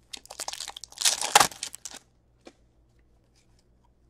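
Foil wrapper of an Upper Deck hockey card pack being torn open and crinkled by hand: a rapid crackle over the first two seconds, loudest about halfway through, then a single faint tick.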